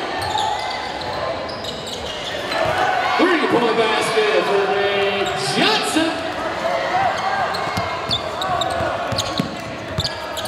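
Basketball bouncing on a hardwood court in a large gym, with players' voices calling out over the play.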